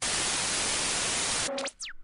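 Television static: a steady white-noise hiss that starts abruptly and cuts off suddenly about a second and a half in, followed by a few quick falling whistle tones, as in a tuning or switch-over effect.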